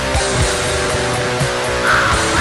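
Depressive black metal: distorted electric guitars playing sustained chords over drums, with kick-drum hits.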